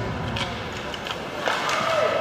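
Live ice hockey game ambience in an arena: voices from the ice and the stands, with a few sharp clacks of sticks and puck.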